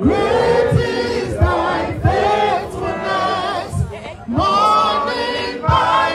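A group of voices singing a slow song together, in phrases broken by short pauses, with low thuds underneath.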